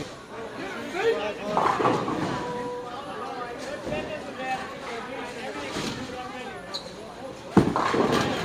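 Bowling-alley background chatter: several people talking at once, not close to the microphone. Near the end comes a sudden loud knock as a bowling ball is released onto the lane and starts rolling.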